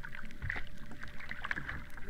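Sea water splashing and lapping at the surface, fairly quiet and irregular, with small splashes as a basking shark's fins break the water beside a boat.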